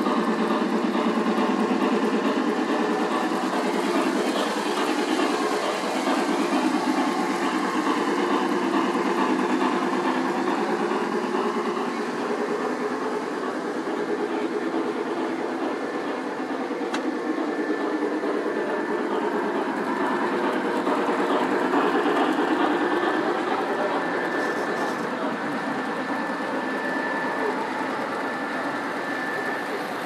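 O-gauge three-rail model trains running on a layout: a steady rumble of metal wheels on track that starts abruptly and holds throughout.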